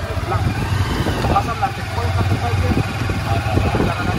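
Small motorcycle engine of a passenger tricycle running steadily at low speed, heard from inside the tricycle, with people talking over it.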